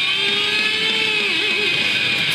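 Distorted electric guitar, an Ibanez RG, sustaining a single held note that wobbles in pitch for a moment past the middle, over a steady hiss of amp distortion.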